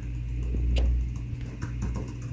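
Laptop keyboard keystrokes: one sharp click a little under a second in, then a quick run of taps near the end, over a low rumble that swells through the first second.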